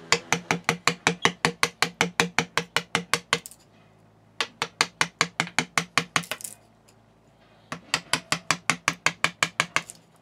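Hammer rapidly striking a cold chisel held on the steel tang of a knife blank in a vise, cutting off the excess length: sharp metallic blows with a ringing tone, about six a second, in three runs separated by short pauses.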